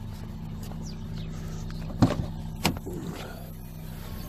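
Two sharp clicks of a hatchback's cargo-area fittings being handled, about two seconds in and again two-thirds of a second later, over a steady low hum.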